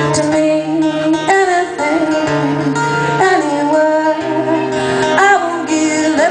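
A woman singing a folk song in long held notes over a strummed acoustic guitar, performed live.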